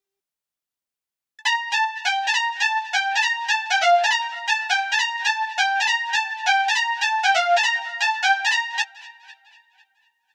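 Roland Zenology software synth lead preset 'Windy Lead' playing a looped melody of short, quick notes in a high register. It starts about a second and a half in and stops shortly before the end, leaving a brief fading tail.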